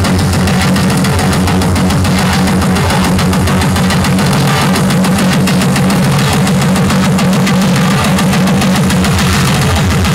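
Loud trance dance music from a DJ's live set over a festival sound system, with a heavy, steady bass line and a fast driving beat.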